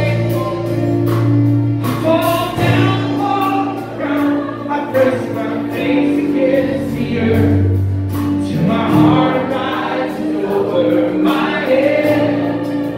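A live worship song: voices singing over keyboard and acoustic guitar.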